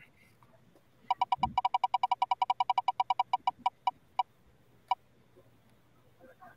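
Online spinning-wheel app's tick sound effect: rapid, even clicks about ten a second that slow and spread out as the wheel coasts to a stop. The last tick comes about five seconds in.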